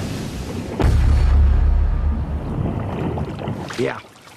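A small underwater explosive charge in a paddling pool goes off under a model boat: a deep boom about a second in, followed by a low rumble and splashing water that die away over the next couple of seconds.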